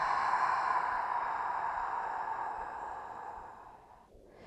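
A long, slow exhale through the mouth, a breathy rush that fades away gradually over about four seconds.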